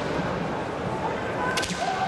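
Bamboo kendo swords (shinai) cracking sharply: two quick cracks close together near the end, over the hall's background noise.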